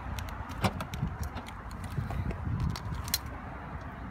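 Scattered clicks and light knocks over a low rumble as the trunk lid of a Ford Fusion is unlatched and raised. The loudest click comes a little over half a second in.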